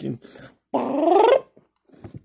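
One short, loud voice-like sound, under a second long, rising steadily in pitch.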